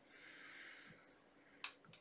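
A person sniffing perfume on the back of the hand: one faint inhale through the nose lasting under a second, then a single short click near the end.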